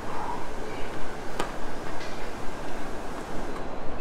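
Steady open-air background noise, with a single sharp click about a second and a half in.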